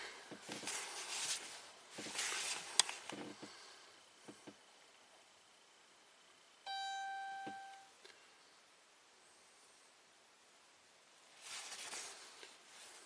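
Faint handling noise with a sharp click, then a single steady electronic beep lasting just over a second about two-thirds of the way in.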